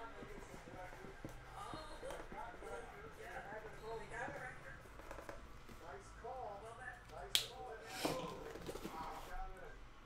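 Faint voices in the background, with a sharp click about seven seconds in and a softer knock about a second later.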